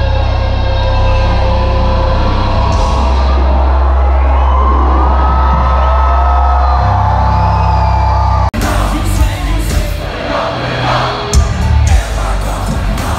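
Live concert music recorded from among the crowd: a loud, heavy bass held under a sung melody. It breaks off abruptly about eight and a half seconds in, and the crowd then yells and cheers over the music.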